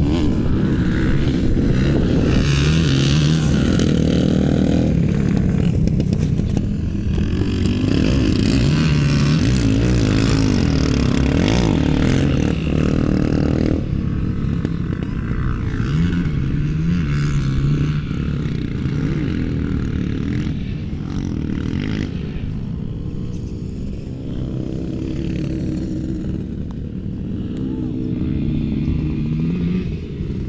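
Off-road racing sidecar motorcycles running on the course, their engines revving, the pitch rising and falling repeatedly as they accelerate and shift. The sound is loudest in the first half and eases off somewhat after about halfway.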